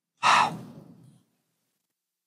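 A man's sigh: one breathy exhale starting a quarter second in and fading away within about a second, between phrases of speech.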